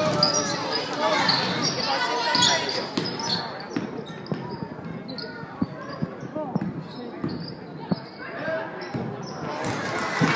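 A basketball bouncing on a hardwood gym floor among shouting spectators. The voices are strongest for the first few seconds, then separate ball bounces stand out, and cheering and clapping rise near the end.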